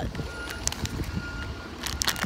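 A vehicle's reversing alarm beeping: a single high tone that repeats about every second and a half, with a few faint clicks over it.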